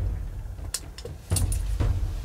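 Close-up handling noise: a deep rumble with several light clicks and rattles.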